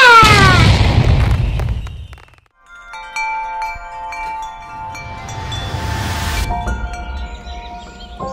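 A firework-burst sound effect: a falling whistle over a low rumbling boom that dies away within about two seconds. Then soft wind-chime music of sustained ringing tones, with a swelling whoosh about six seconds in.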